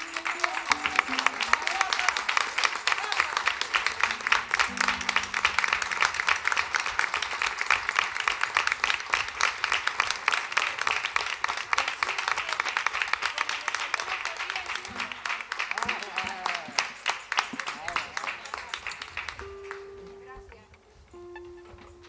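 Audience and performers applauding, a dense, sustained round of clapping that dies away after about nineteen seconds.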